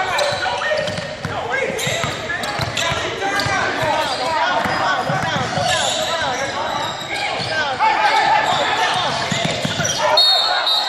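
A basketball dribbled on a hardwood gym floor during play, with voices carrying in a large hall.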